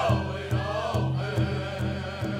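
Powwow drum group singing in chorus over a steady unison beat on a large shared drum, about two to three strokes a second.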